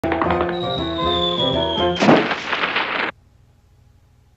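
Cartoon music with a high tone sliding slowly down, then about two seconds in a loud crunching rustle of dry leaves as a body lands in a leaf pile, lasting about a second and cutting off suddenly.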